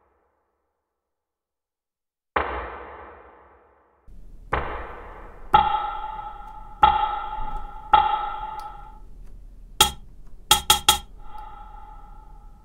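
Drum pad samples triggered on an Akai MPC and heard fully wet through its Air Spring Reverb effect, each hit trailing off in a splashy spring-reverb decay. After about two seconds of silence come two noisy hits, then pitched metallic pings about a second apart, with a few sharp clicks near the end.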